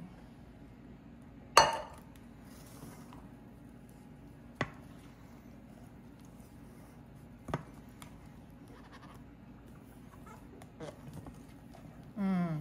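A spatula knocking against a stainless steel mixing bowl during folding of a thick, airy batter: three sharp clinks, the loudest about a second and a half in and two softer ones spaced about three seconds apart, over a faint steady room hum.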